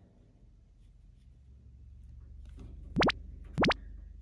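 Two quick cartoon sound effects, each a short sharp upward pitch sweep, about half a second apart near the end, over a faint low hum.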